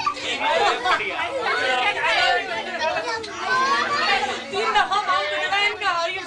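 Chatter of many voices talking over one another, adults and children together, with no single speaker standing out.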